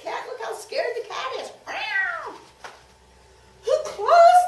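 A woman's voice imitating a cat's meow, one falling cry about two seconds in, among short bits of speech.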